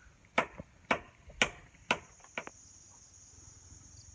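A blade chopping into bamboo: four hard strokes about half a second apart, then two or three lighter, quicker cuts.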